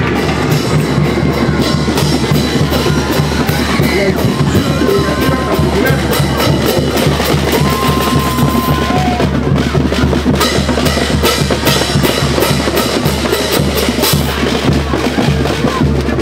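A marching band playing: snare drums, bass drums and cymbals keep a steady, driving beat throughout, with a few held higher notes over it.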